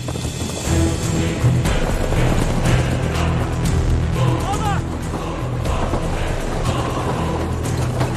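Dramatic film score with a deep, sustained low register, over the hoofbeats of galloping horses; a man shouts about halfway through.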